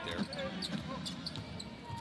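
Basketball being dribbled on a hardwood court, a few short bounces, over the low background noise of an arena.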